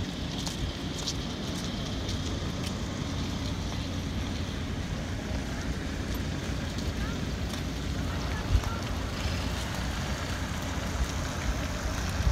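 Steady low rumble of outdoor ambience, mostly wind buffeting the microphone, with a single thump about eight and a half seconds in.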